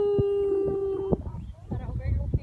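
A person's long, drawn-out shout that wavers in pitch at first, then holds one steady note until it cuts off about a second in.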